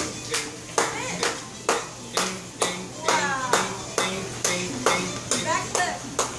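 Hands clapping in a steady beat, about two claps a second, keeping time for a dance.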